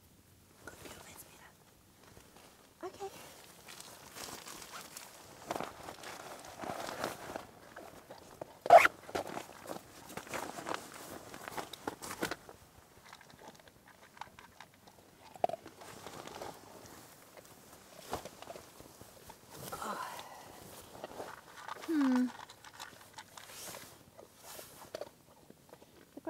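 A dog eating from a bowl on the ground: irregular chewing and crunching, with one sharp knock about nine seconds in.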